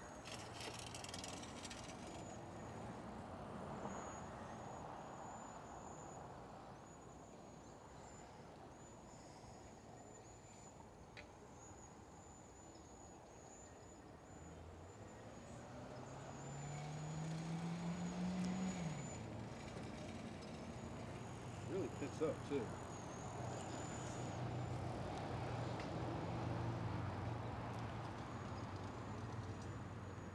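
Faint whine of an electric trike's 750-watt front hub motor, rising in pitch for a few seconds as it accelerates under throttle and then dropping away, over quiet outdoor ambience. A low steady hum runs through the second half.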